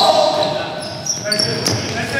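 Basketball game sounds in a gym: a loud shout of "Two!" right at the start, then short sneaker squeaks on the court floor and a few sharp clicks as play goes on.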